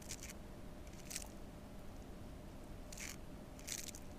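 A Chinese painting brush drawn across the painting in four short, faint swishing strokes, the last two close together: fine outlining strokes touching up the cabbage stems.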